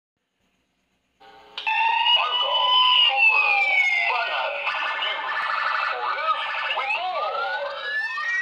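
A siren sweeping down and up in pitch, starting suddenly about a second and a half in after silence, with a voice over it.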